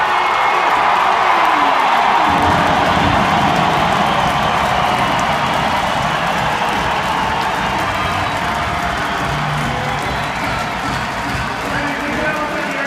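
Large arena crowd cheering, loudest in the first few seconds, with music playing over it.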